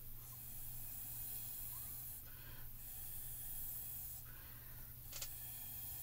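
Faint, airy puffs of breath blown through a plastic straw, pushing wet alcohol ink across synthetic Yupo paper: about three long blows with short pauses between.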